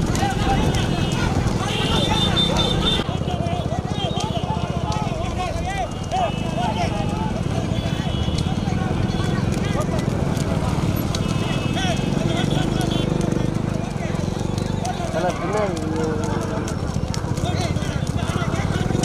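Motorcycle engines running close behind, with men shouting and young bulls' hooves clopping on the road.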